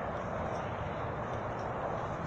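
Steady outdoor background rumble and hiss, typical of distant road traffic, picked up by a phone microphone.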